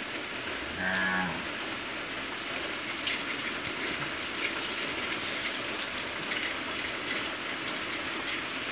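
Steady watery hiss as a phone camera is moved underwater among hornwort in a fish tank. A short, flat low hum comes about a second in.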